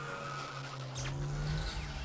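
Sound effect of a car driving: a steady engine drone with a high, squeal-like whine over it, and a deeper rumble joining about a second in.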